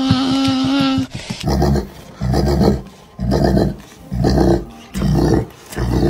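A dog gives a drawn-out whine for about the first second. Then a large dog being scratched on the head makes a string of low rumbling growls, about one a second.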